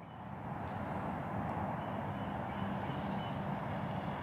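Steady low rumble of distant vehicle traffic that swells slightly over the first second and then holds even.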